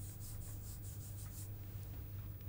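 A hand rubbing chalk off a chalkboard, faint repeated wiping strokes, over a steady low electrical hum.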